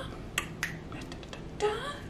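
A few small, sharp clicks, two clear ones in the first second followed by fainter ticks, then a brief murmur of a voice near the end.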